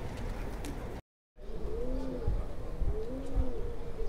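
A pigeon cooing in repeated short phrases, three of them about a second apart, each rising and falling, over a steady low rumble of wind on the microphone. The sound drops out briefly about a second in.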